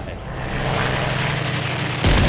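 A steady, aircraft-like engine drone with a rushing noise that slowly builds over the two seconds.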